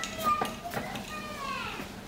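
A young girl's high-pitched voice calling and talking, faint, between her mother's replies.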